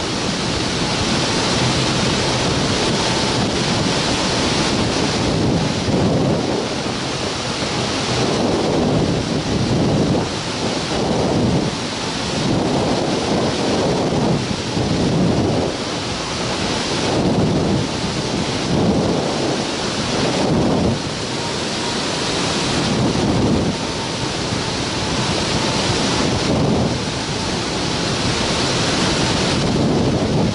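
Wind rushing over the microphone of a camera mounted on a hang glider in flight, a dense, loud rush that swells and eases every second or two.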